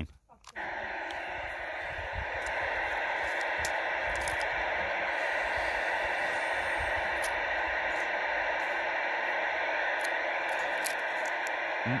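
Steady static hiss from a CB radio's speaker, starting about half a second in right after a transmission ends, with no reply coming through on the channel.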